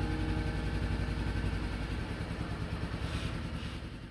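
An engine idling with a steady low, even pulse, fading out gradually toward the end.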